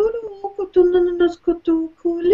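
A woman chanting a channeled light-language blessing: short syllables intoned on one nearly steady pitch, the notes clipped apart by brief gaps, with a slight rise in pitch just after the start.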